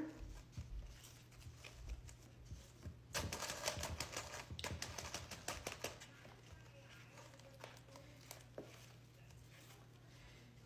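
Hands pressing and packing potting soil down around a pothos's roots in a pot, soft crackling and rustling. A denser run of quick crackly clicks comes about three seconds in and lasts a couple of seconds, then fainter scattered ticks.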